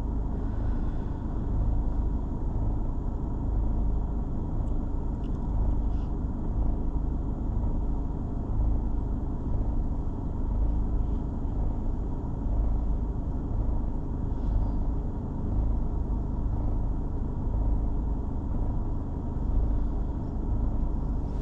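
Steady low rumble inside the cabin of a stationary car with its engine idling.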